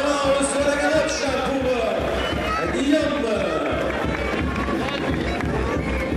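Spectators' voices in the stands mixed with music, at a steady level with no single loud event.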